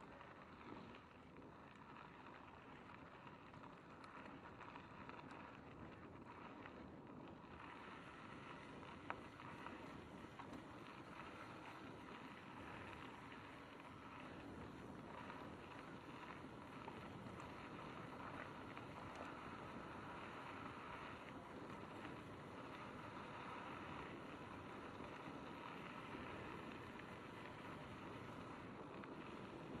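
Mountain bike rolling along a gravel forest trail: faint, steady tyre noise on the dirt with wind on the microphone, and a sharp click about nine seconds in.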